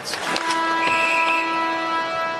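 Arena end-of-period horn, one long steady tone starting about half a second in, over crowd noise: it marks the end of the second period.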